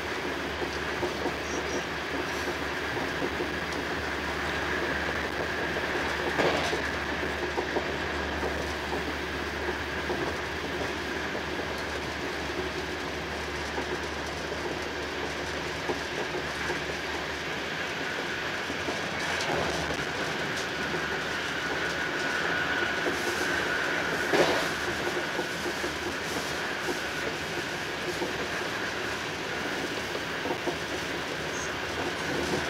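EuroCity train's passenger coach running at speed, heard from inside: a steady rumble of wheels on rail with a faint high whine, broken by a few sharper knocks, the loudest near the end.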